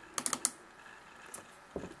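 Computer mouse button clicking, a quick cluster of clicks, a double-click that opens a program file. One more faint tick follows.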